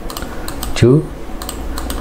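Several sharp clicks from a computer keyboard and mouse, spread through the two seconds, as a Photoshop user works.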